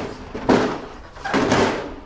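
Sheet copper scraping and rattling as it is dragged out from under a wire metal shelf: two long scrapes, the first starting sharply about half a second in.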